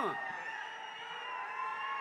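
Several thin, steady high whistling tones held together over low hall noise, drifting slightly in pitch.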